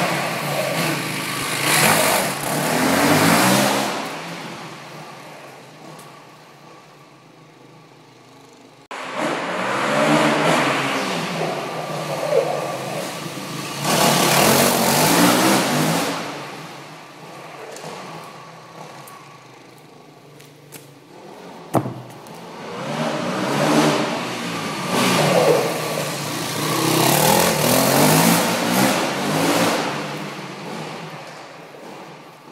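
Yamaha WR450F single-cylinder four-stroke dirt bike engine revving hard and easing off as it is ridden around, in three loud spells with quieter running between. There is one sharp click a little past two-thirds of the way through.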